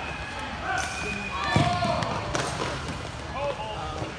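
Several people talking at once in a large gym hall, with a single low thud about one and a half seconds in.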